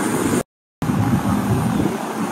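Steady rushing outdoor noise with a low rumble. It is broken by a short, total dropout about half a second in, where the footage is cut.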